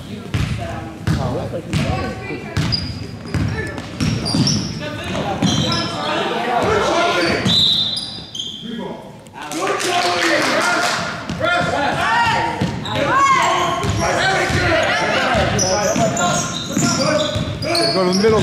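A basketball bouncing on a gym's hardwood floor, a steady run of bounces in the first few seconds, with sneakers squeaking on the floor. Voices of players and spectators echo in the hall and get louder and busier from about ten seconds in.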